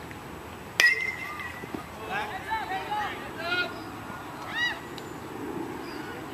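A metal baseball bat hits the ball just under a second in: a sharp crack with a short ringing ping. Then several people shout and call out for a few seconds.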